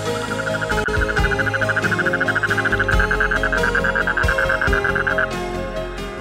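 A toad calling: one rapid pulsed trill lasting about five seconds, which stops shortly before the end. Background music plays throughout.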